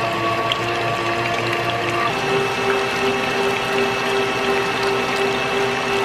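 KitchenAid Artisan stand mixer running steadily, its motor and gears humming as the wire whip beats a cream cheese and milk pudding mixture in the steel bowl. The hum steps up slightly in pitch about two seconds in.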